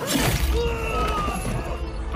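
A sudden crash, like something smashing, right at the start during a staged arena fight, followed by a few held tones.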